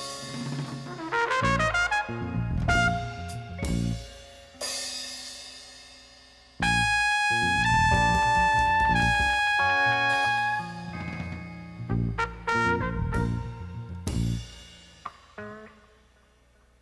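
Instrumental music: short pitched notes and percussive hits, then a loud run of held notes that comes in suddenly about six and a half seconds in and breaks off around ten and a half seconds, followed by scattered hits that die away.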